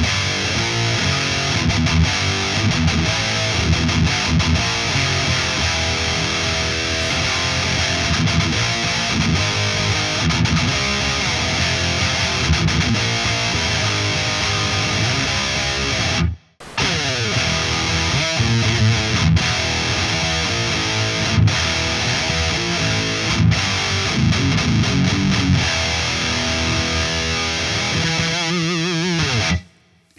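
Distorted electric guitar playing heavy metal riffs on an ESP LTD M-1000HT. The playing breaks off briefly about halfway through, resumes, and stops just before the end.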